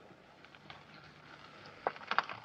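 Quiet, hushed background: a faint low hum with a couple of soft clicks, the second near the end.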